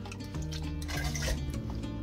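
Soft background music, with soy-sauce brine dripping and splashing as a handful of pickled prickly lettuce leaves is lifted out of a plastic container.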